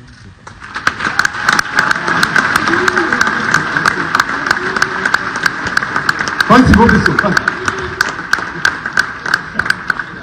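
A group of people applauding, steady clapping that starts about a second in. A man's voice cuts in briefly past the middle.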